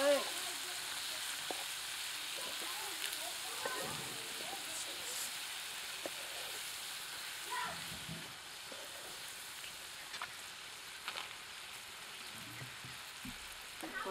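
Chopped green bell peppers and onion sizzling steadily as they fry in a non-stick pan, with a wooden spatula stirring them and giving occasional light scrapes and taps against the pan.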